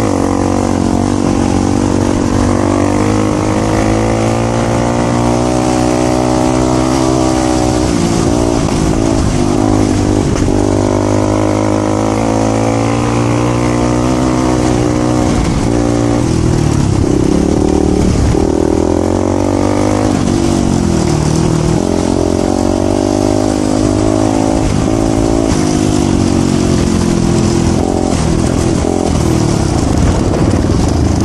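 Voge 300 Rally's single-cylinder engine running under way on a dirt track, its note rising and falling with the throttle, with several dips near the middle. A steady hiss of wind and road noise runs under it.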